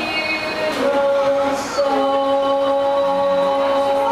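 Many voices singing long, steady held notes, moving to a new note about a second in.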